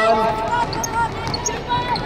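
A basketball being dribbled on an outdoor hard court during play, with voices calling out over it.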